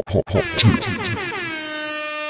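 Air-horn sound effect: a loud horn tone that slides down in pitch and then holds steady, with a brief laugh over its start.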